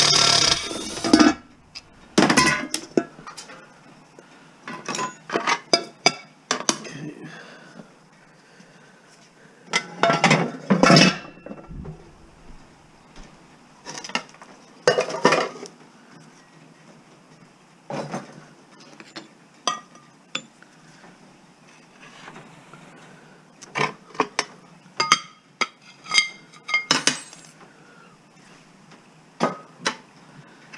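A cordless driver runs briefly at the start, backing out the screw on a frying pan's handle. Then come many separate clinks and clanks of metal pans, screws and tools being handled and set down on a metal workbench.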